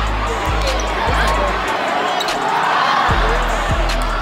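Basketball game sound in a gym: a basketball bouncing on the hardwood under crowd noise, with music carrying a heavy bass beat. The bass drops out for about a second and a half in the middle, then comes back.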